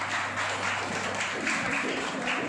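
Audience clapping, a dense even patter of many hands.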